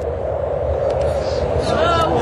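Steady rush of wind over a low rumble: the sound of an airliner gliding with both engines out. A voice starts faintly near the end.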